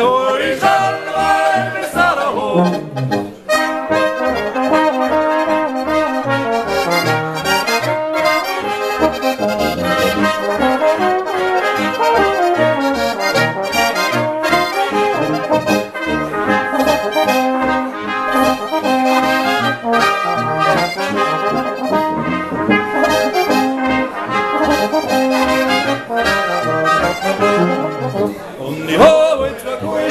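Austrian folk band playing an instrumental interlude of a folk song on clarinet, brass horn and accordion, over a steady oom-pah beat.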